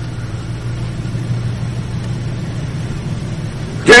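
A steady low hum with an even level, its weight in the low bass and no clear events in it. Speech comes back just before the end.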